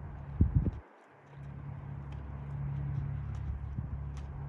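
Hoofbeats of a horse moving around a dirt riding arena, faint under a steady low hum. A few loud thumps come about half a second in, then the sound cuts out briefly for about half a second before the hum returns.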